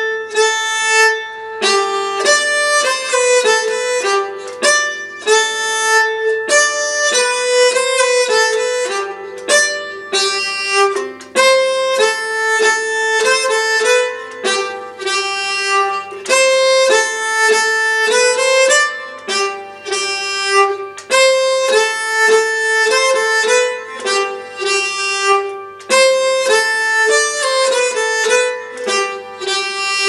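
Solo nyckelharpa (Swedish keyed fiddle), bowed, playing a simple folk tune in G major at a steady pace, its notes changing several times a second.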